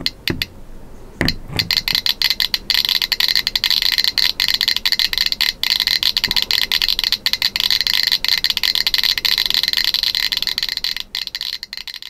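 Radiation detector clicking rapidly, each click a short high-pitched beep. The clicks start sparse about a second in and quickly build to a dense, continuous stream as the detector sits over a radioactive sample, a high count rate. The clicks fade out near the end.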